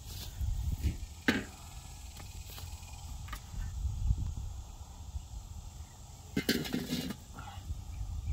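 Work noise from opening up an in-ground barbacoa pit: a sharp knock about a second in, a few faint clicks, and a short rasping scrape near the end, over a low rumble.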